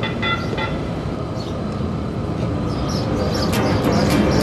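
Light-rail train car running, heard from inside the car: a steady rumble and rail noise, with a brief repeated chime at the start.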